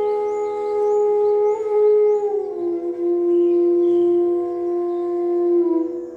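E-base bansuri (bamboo transverse flute) playing long sustained notes of Raag Manjari, gliding smoothly down from one held note to a lower one about two seconds in and holding it, with a short dip near the end. A steady drone sounds underneath.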